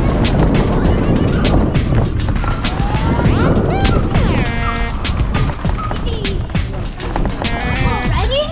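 Wind rumble on a helmet-mounted camera's microphone, with the knocks and rattles of a mountain bike riding down a dirt trail. The rumble is heaviest in the first half and eases about halfway through.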